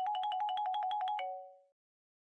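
Mobile phone ringtone for an incoming call: a rapid electronic trill of about ten beeps a second on two close alternating notes, ending on a lower note and cutting off after about a second and a half.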